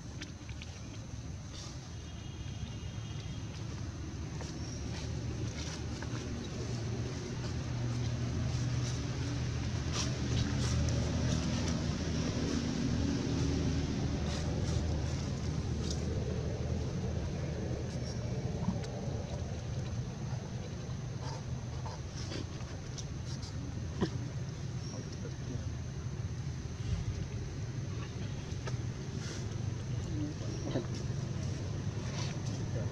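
A low motor drone, like a distant engine, swells in the middle and eases off again, with scattered small clicks and rustles over it.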